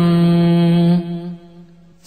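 Chanting voice reciting a Pali protective verse, holding the last syllable of a line on one steady pitch, then fading away about a second in, leaving a short pause before the next line.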